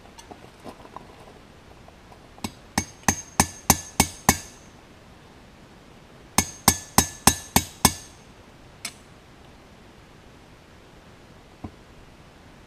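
Hand hammer striking a chisel on the steel anvil to cut a small forged fish hook free of the wire, in sharp ringing metal strikes. Two runs of quick blows about three a second, seven then six after a short pause, are followed by two lighter single taps.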